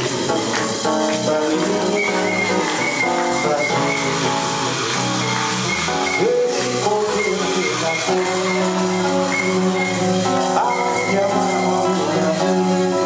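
A live samba song: a man singing into a microphone while strumming an acoustic-electric guitar, with light percussion keeping the beat.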